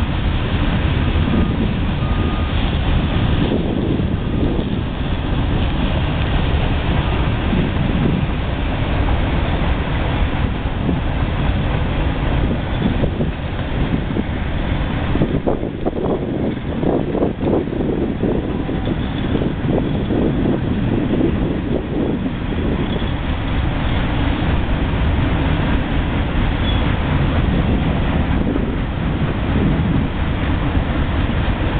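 Boxcars of a freight train rolling past on the track: a steady rumble and rattle of wheels on rail.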